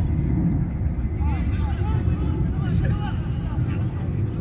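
Footballers calling and shouting to one another across the pitch, short distant voices heard over a steady low rumble.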